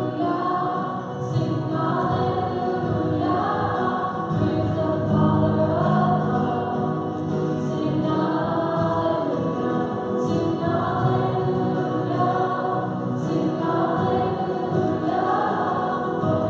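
A choir singing a hymn during Mass, in slow sustained phrases.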